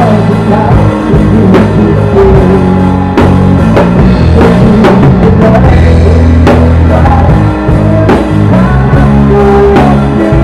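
A drum kit played up close with a live rock band, beats steady throughout over the band's bass and guitar.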